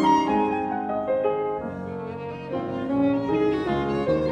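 Piano trio playing classical chamber music: violin, cello and piano together in a moderately paced movement, the cello bowing sustained notes under the violin line and piano chords.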